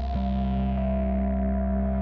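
Outro music made of sustained, held chords, with a new chord coming in just after the start.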